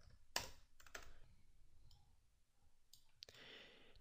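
A few faint, short clicks at a computer, the loudest about a third of a second in and a smaller cluster around one second, over near silence.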